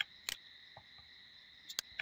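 A few sharp computer mouse clicks as cells are clicked and dragged, over a faint steady high-pitched whine.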